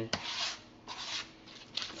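Rubber spatula stirring and scraping cake batter around a plastic mixing bowl, in a few short scraping strokes with pauses between.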